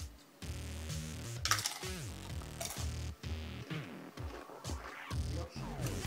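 Background music with a repeating bass line, and a short noisy sound about a second and a half in.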